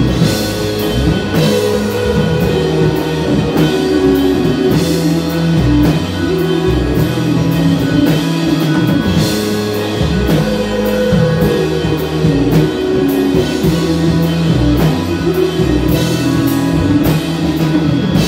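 Live rock band playing: electric guitar over a drum kit with cymbal strikes, in a steady beat.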